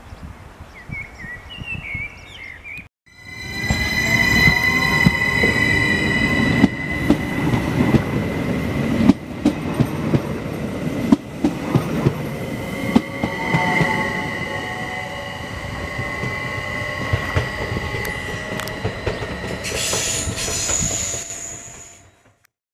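Stadler FLIRT electric multiple unit (SBB RABe 522) passing close by as it pulls away, its traction drive whining with tones that rise in pitch as it gathers speed. Under the whine run a steady high squeal, a low running rumble and repeated knocks of the wheels over rail joints. It fades out at the very end.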